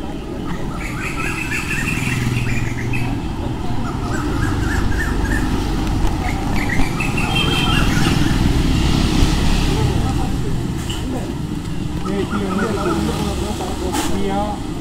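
Busy street noise: a steady traffic rumble with motorcycles, and people talking.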